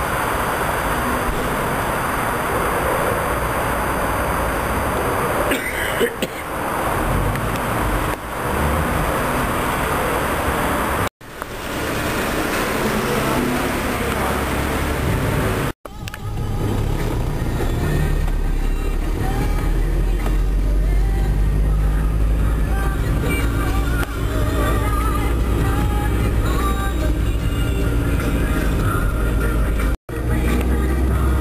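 Music and talk, as from a car radio, over the low steady rumble of a car running; the sound cuts off abruptly twice, and the rumble is strongest in the second half.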